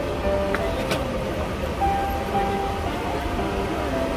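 A steady background din with faint music playing through it, and two light clicks about half a second and a second in.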